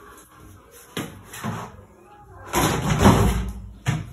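Laundry and plastic laundry baskets being handled: sharp knocks about a second in and again near the end, and a louder rustling thump in between as clothes are moved.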